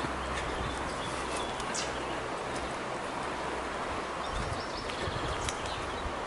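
Soft footsteps of someone walking barefoot on a forest dirt path, over a steady outdoor hiss, with a few faint bird chirps about two-thirds of the way through.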